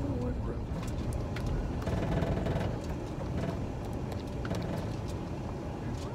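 Steady low rumble of a car driving, heard from inside the cabin, with a few faint clicks.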